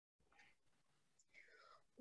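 Near silence: a pause between speakers on a video call, with only faint room tone.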